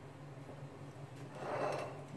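Quiet kitchen room tone with a faint steady low hum, then a soft scrape as a ceramic bowl of boiled greens is slid across the countertop about one and a half seconds in.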